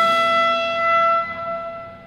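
Jazz combo's trumpet and saxophone holding one long sustained note over a low held bass tone, fading away over the last second.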